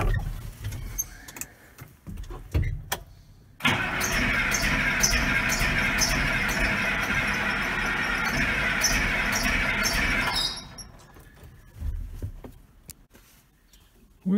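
Case 2090 tractor's starter cranking the diesel engine steadily for about seven seconds, starting about four seconds in, then stopping without the engine catching: air is still in the fuel system after the new fuel filters were fitted.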